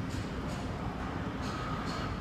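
A steady low rumble of outdoor background noise with a few faint clicks, two of them close together late on.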